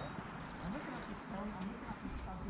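Faint, indistinct talking between people, with small birds chirping high and brief in the background.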